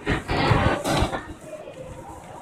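Indistinct background chatter of many children in a crowded hall, louder in the first second and quieter after.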